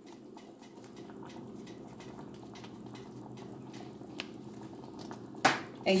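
A saucepan of thick canned pork and beans with sliced hot dogs simmering on the stove, faint irregular bubbling pops over a low steady hum, with a slightly sharper click about four seconds in.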